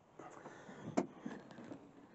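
A man clambering out of a large plastic wheelie bin hide: faint rustling of clothing and boots against the bin's plastic, with one sharp knock about a second in.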